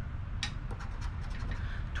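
A coin scratching the latex coating off a lottery scratch-off ticket in a few short, faint strokes, over a steady low hum.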